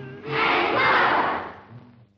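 A group of children shouting an answer together in unison, 'duck and cover', over background music. The shout starts about a third of a second in and lasts about a second.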